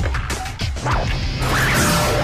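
Action-scene music with a steady low pulse, overlaid with several quick hit sound effects in the first second and a loud crash about a second and a half in.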